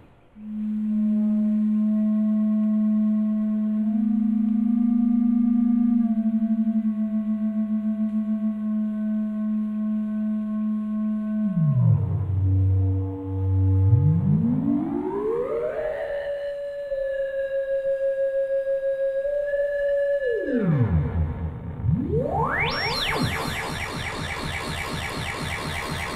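Make Noise Echophon pitch-shifting echo module on a Eurorack modular synthesizer, processing a sine-wave tone. A low held note wavers slightly for about twelve seconds, then glides down, climbs to a higher held note, and falls away. Near the end it turns into a dense cascade of repeated rising sweeps as the echoes feed back.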